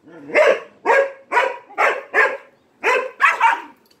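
Aspin dog barking about eight times in quick succession during rough play.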